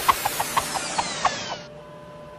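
Cartoon sound effect of a human centrifuge spinning down: a rushing whoosh with a regular pulse on each turn, falling in pitch as it slows, cut off sharply near the end and leaving a faint steady hum.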